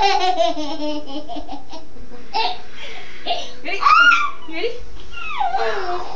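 An adult and a small child laughing. A long run of quick ha-ha laughter falls in pitch at the start, shorter laughs follow, and a loud high-pitched squeal comes about four seconds in.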